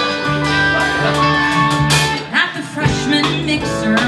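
Live pop-rock band playing an instrumental passage between sung lines, with guitar prominent over piano, bass and drums. The music briefly thins out about two and a half seconds in, then picks up again.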